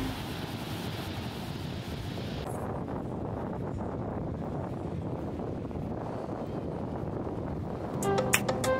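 Small ocean waves washing onto a sandy beach, with wind buffeting the microphone. About two and a half seconds in, the hiss of the surf cuts off suddenly, leaving a lower wind rumble.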